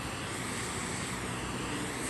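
Steady hiss of a spray polyurethane foam gun applying insulation to a roof, with machine noise underneath.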